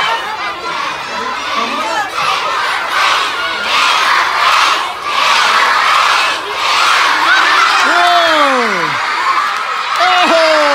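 A large crowd of elementary-school children cheering and shouting, swelling loudest in the middle, with a couple of long cries that slide steeply down in pitch near the end.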